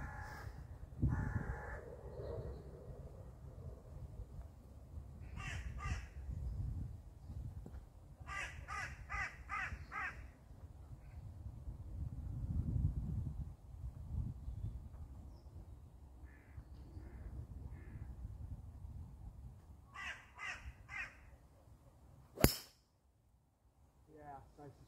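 Crows cawing in three bouts of short repeated calls. Near the end comes one sharp crack of a golf club striking a ball off the tee, the loudest sound.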